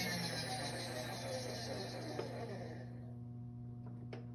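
Manual milling machine table being hand-cranked along its X axis: a soft, even handwheel and leadscrew noise that dies away about three seconds in as the table stops, over a steady low electrical hum.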